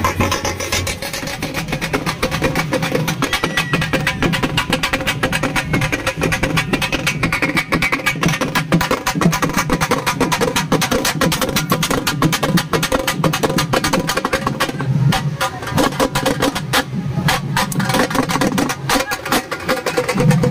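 Loud, percussion-heavy band music with fast, unbroken drumming, from a street procession band's bass and snare drums, and a melody wavering above the drums.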